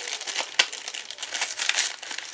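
Thin clear plastic packaging crinkling irregularly as hands handle a sheet of clear rubber-free craft stamps inside it.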